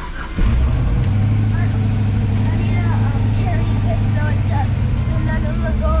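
The twin-turbo LS V8 in a Winnebago motorhome starts about half a second in and settles into a steady, loud idle, heard from inside the cabin.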